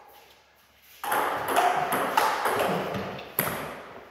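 Table tennis rally: a plastic ball clicking off paddles and the table several times, starting about a second in, with a hall echo behind each hit.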